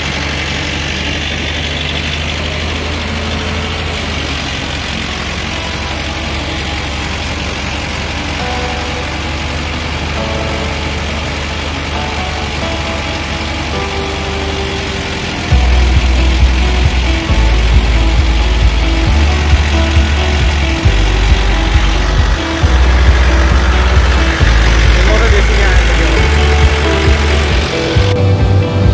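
Tractor-driven paddy thresher running while threshing, a steady loud machine noise with the tractor's diesel engine beneath it. About halfway through it gets louder, with irregular low rumbling.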